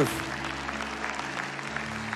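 Congregation applauding, over a soft sustained keyboard chord.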